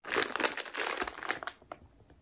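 Plastic pouch of a SARS-CoV-2 antigen test kit crinkling in the hands, dense for about a second and a half, then thinning to a few scattered crackles.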